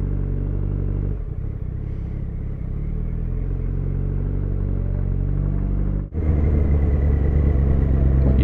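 Yamaha FZ1N motorcycle's inline-four engine running steadily, its tones unbroken. There is a brief dip about a second in, then a sudden break about six seconds in, after which the engine is louder.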